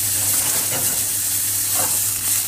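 Sliced mushrooms sizzling steadily in a little oil in a hot nonstick frying pan, left undisturbed so they brown rather than sweat.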